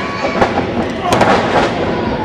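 Sharp impacts of wrestlers' bodies hitting the ring canvas, a few hard strikes about half a second and a second in, over shouting voices.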